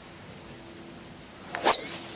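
A driver swung hard and striking a golf ball off the tee: a quick swish and one sharp crack of club on ball about a second and a half in.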